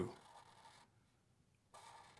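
Faint scratching of a black felt-tip marker drawing on paper, with near silence between the strokes.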